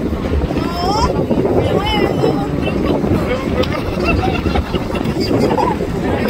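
Wind buffeting the microphone in a steady low rumble, with people talking in the background throughout.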